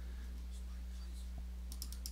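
Computer mouse clicks: a single faint click, then a quick cluster of three or four near the end, over a steady low electrical hum.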